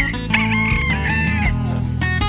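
A rooster crows once, a single call lasting a little over a second, over acoustic guitar music.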